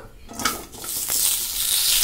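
A lump of butter dropped into a hot pan and starting to sizzle as it melts, the sizzle building from about a second in.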